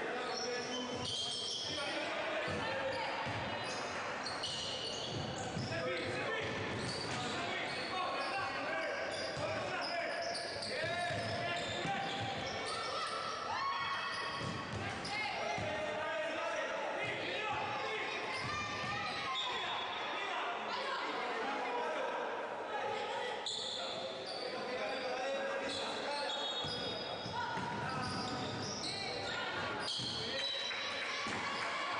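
Basketball game sounds in a gym: a ball bouncing on a hardwood court amid the voices of players and spectators, echoing in a large hall.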